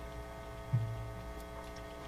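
Steady electrical mains hum from the sound system, with a brief low thump about three quarters of a second in.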